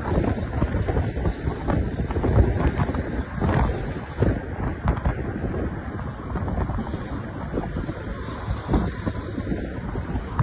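Wind buffeting the microphone while riding at highway speed, mixed with the rumble of road and traffic noise from the moving vehicles.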